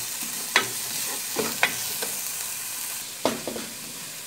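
Onions and garlic paste sizzling in hot oil in a pot while being stirred, with a few sharp knocks of the stirring utensil against the pot.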